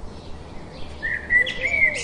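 House sparrows chirping: faint at first, then a run of louder chirps in the second half, with one sharp call near the end.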